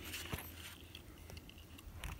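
Faint footsteps and light crunches on dry, gravelly ground among brush, with a few soft clicks over a low steady rumble.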